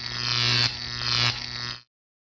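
Electric neon-sign buzz sound effect: a steady low hum under a crackling hiss. It surges in waves about two-thirds of a second apart, then cuts off abruptly near the end.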